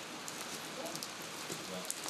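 Steady rain falling on a hard surface, an even hiss with scattered small ticks of drops.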